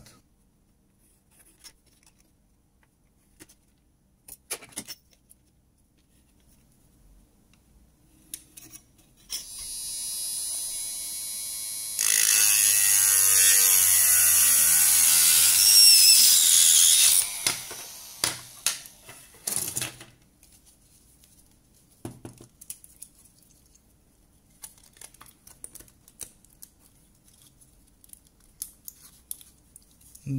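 A small homemade rotary tool with a cutting disc runs up, then cuts into the goggles' plastic face plate for about five seconds, much louder under load, before winding down. Scattered clicks and handling knocks come before and after.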